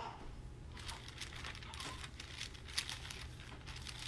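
Thin Bible pages being leafed through by hand: a run of soft, irregular paper rustles and crinkles, over a low steady hum.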